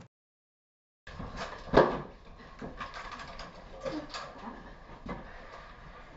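About a second of dead silence, then room sound with one sharp knock about two seconds in, the loudest thing, and lighter knocks and clatter after it.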